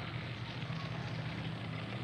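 Steady low drone of a distant motor under faint outdoor background noise.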